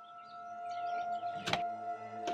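A front door being shut, with one sharp click as it latches about one and a half seconds in, over held soundtrack music tones that slowly swell.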